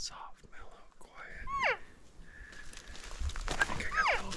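Cow elk mew call: a short, clear call sliding down in pitch about a second and a half in, with a second falling call starting right at the end. Soft rustling of movement in the last second.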